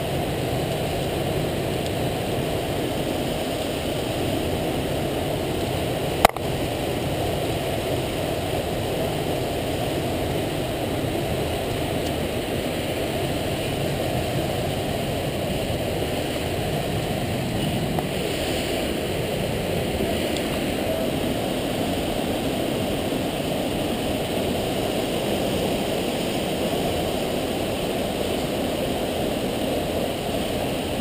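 Steady rushing roar of a mountain torrent and waterfall below the rock face. A single sharp click comes about six seconds in.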